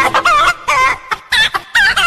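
Chicken clucks from a dance track: about six short, wavering calls in quick succession with brief gaps, while the track's beat drops out.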